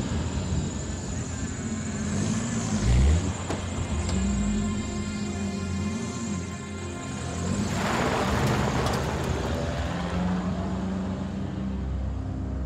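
A small pickup truck's engine running and pulling away over wet ground, with a hiss of tyres on the wet surface about eight seconds in, under background music.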